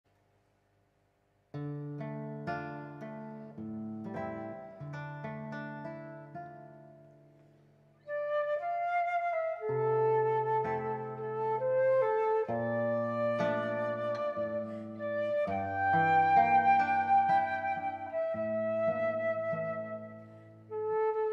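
Flute and classical guitar duet: the guitar plays plucked chords alone, starting about a second and a half in, and the flute enters with a sustained melody about eight seconds in.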